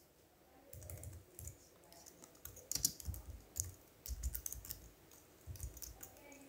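Faint typing on a computer keyboard: irregular keystrokes in short runs, with a louder cluster of strokes about three seconds in.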